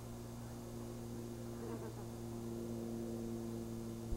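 Steady low electrical hum, a buzz with a few evenly spaced overtones that does not change in pitch or level.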